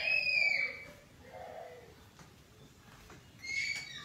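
Young children squealing in the background: a high-pitched, sliding squeal in the first second and a shorter one near the end.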